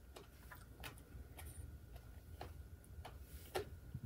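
Faint chewing of crunchy papaya salad: scattered soft clicks and crunches at an uneven pace over a low steady hum.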